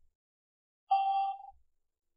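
A single steady electronic beep from a Softy SBS-10 Bluetooth speaker, about half a second long, starting about a second in.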